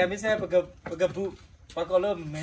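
A man talking in a language the recogniser could not write down, in short phrases with a brief pause in the middle.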